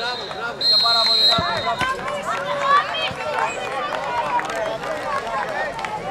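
Referee's whistle giving one long, steady blast about half a second in, the end of the full-time whistle. Men's voices call and talk around the pitch.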